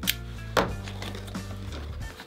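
Cardboard shipping box handled on a table and its lid lifted open, with two sharp knocks about half a second apart near the start, over steady background music.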